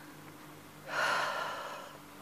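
A woman's audible breath, a sharp rushing breath about a second in that fades away over the next second, over a faint low room hum.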